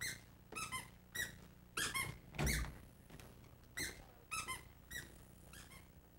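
A run of about ten short, high-pitched squeaks over six seconds, several coming in quick pairs.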